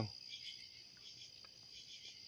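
Faint, steady high-pitched chorus of night insects chirping.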